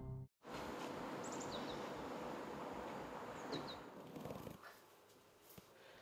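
Steady outdoor background noise with a few short, high bird chirps, about a second in and again at about three and a half seconds; the noise cuts off about four and a half seconds in.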